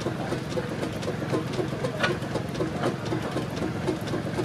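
An engine running steadily at idle with a regular, even beat and light clicking.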